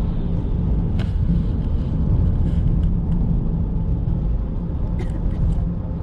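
Steady low road rumble heard inside a moving car's cabin, from the tyres and engine at speed. A sharp tap about a second in and a few faint clicks near the end.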